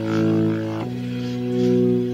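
Instrumental rock music: held, sustained chords with no vocals, changing chord a little under a second in and swelling and easing in loudness about every second and a half.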